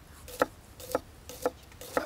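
Kitchen knife slicing a red onion on a wooden cutting board: an even run of sharp taps as the blade strikes the board, about two a second.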